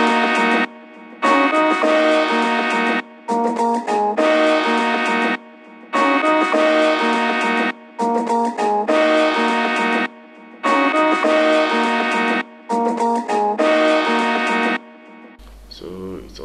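Chopped-sample verse melody playing back from a beat: short phrases of steady pitched notes in stop-start chunks separated by brief gaps. The pattern runs through twice and cuts off shortly before the end.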